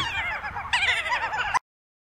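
High-pitched, cartoonish cackling laughter in quick rising-and-falling squeals, louder from about halfway in, that cuts off abruptly a little past one and a half seconds.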